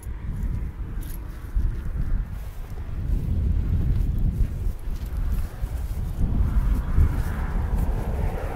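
Wind buffeting the phone's microphone: a gusty low rumble that rises and falls.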